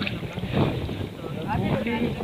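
Indistinct voices talking over steady wind noise on the microphone, with a low rumble of sea and wind underneath.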